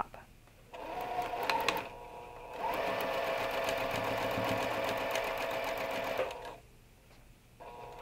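Juki sewing machine stitching a pinned quilt seam. It runs quietly for a couple of seconds, then sews steadily and louder for about four seconds, stops, and starts again near the end.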